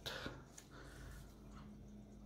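Quiet room with a faint low hum, and a couple of faint taps in the first second as a plastic LEGO minifigure is set down on a wooden table.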